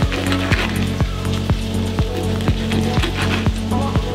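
A knife sawing through the crust of a seeded loaf on a wooden chopping board: a scraping, crunching noise with back-and-forth strokes. Electronic background music with a steady beat plays under it.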